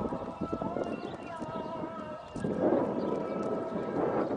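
Small motorcycle engine running, then about two and a half seconds in a louder rush of wind and road noise as the bike picks up speed.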